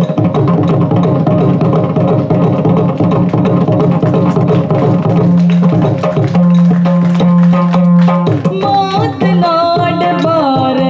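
Yakshagana maddale, a double-headed barrel drum, played by hand in fast, dense strokes. A woman's singing voice comes in near the end.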